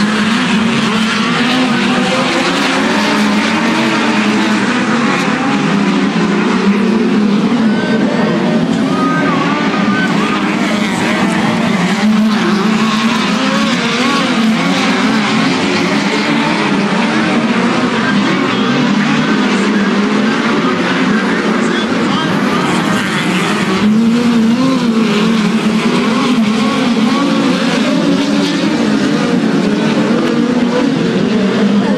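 Several dirt-track race car engines running hard around an oval, a loud, steady din that wavers as the cars go round, with voices in the crowd.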